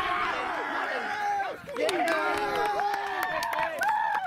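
Several people shouting and cheering at once in overlapping, drawn-out calls, with a brief lull a little before halfway and a few sharp claps.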